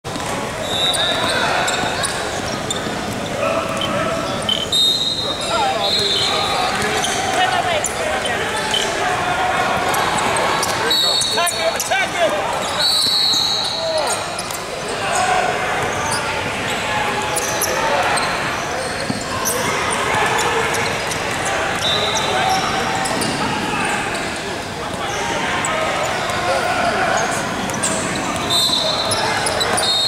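Basketball game in a gym: the ball bouncing on the hardwood court and players' and spectators' voices echoing in the hall, with several short high-pitched squeaks.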